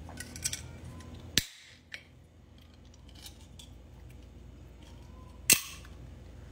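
A soda can being opened. A few small clicks of fingers at the tab come first, then a sharp click about a second and a half in. Near the end the ring-pull cracks the can open with a short fizzing hiss.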